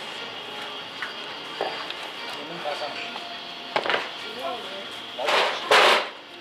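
Glassware and a plastic jug being set down on a table: a sharp clack about four seconds in, then two louder scraping noises near the end, over faint chatter.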